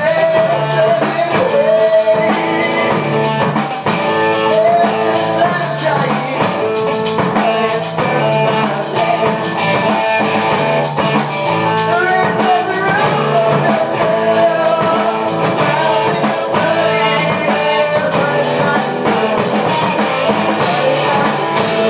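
Rock band playing live in a room: electric guitar, electric bass and a Premier drum kit, with a singer's held, bending notes over a steady beat.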